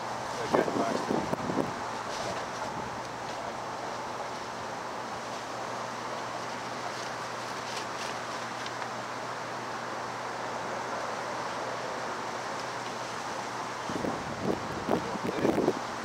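Stiff, weathered paper sheet crinkling as it is laid over and pressed down on a small hive box, in two short spells near the start and near the end. In between, a steady wind hiss on the microphone.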